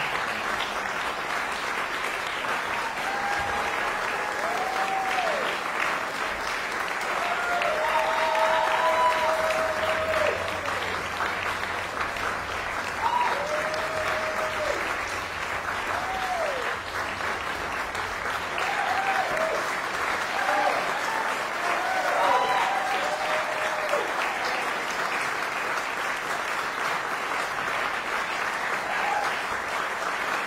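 Audience applauding: steady clapping that carries on without a break.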